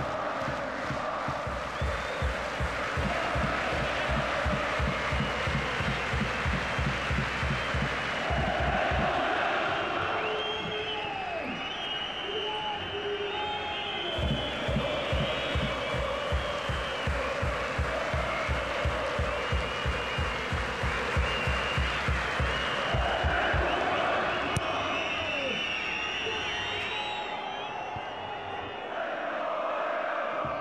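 Large football stadium crowd chanting over a drum beaten in a fast, steady rhythm. The drum drops out for a few seconds about nine seconds in and again for the last several seconds, while shrill whistles rise over the crowd in the middle and later on.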